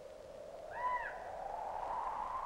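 A single short bird-like call, rising then falling in pitch, a little under a second in. It sits over a steady hum that slowly climbs in pitch.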